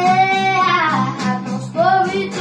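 A girl singing a pop song solo over guitar accompaniment. She holds one long note through the first second, and a new phrase starts near the end.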